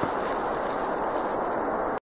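Steady outdoor rustling noise with no speech, cutting off suddenly at the very end.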